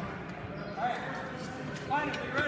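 Indistinct voices echoing in a large gymnasium hall, with two short called-out syllables, about a second in and near the end.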